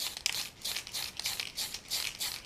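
Aerosol can of Super Clear gloss coat spraying in a quick run of short hissing bursts, several a second.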